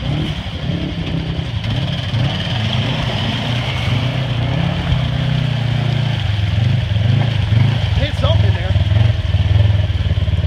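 Side-by-side UTV engine running under load as it churns through deep muddy water, its pitch wavering up and down and growing a little louder toward the end.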